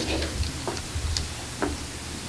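Handheld microphone handling noise: about three soft clicks and knocks over a low steady hum of the room and PA.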